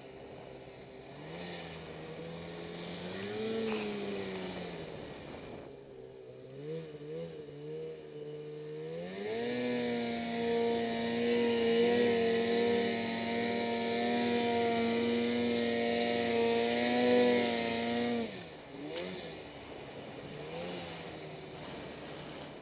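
2008 Ski-Doo Summit XP snowmobile's two-stroke engine pulling through deep powder. It revs up and down for the first several seconds, then climbs to high revs held steadily for about nine seconds, and drops off sharply when the throttle is released.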